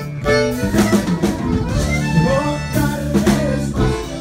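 Live Tejano band music: button accordion playing over bass and drum kit.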